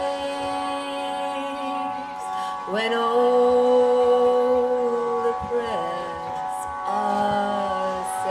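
A woman singing long held notes without words over a steady harmonium and tanpura drone. The loudest note comes in the middle.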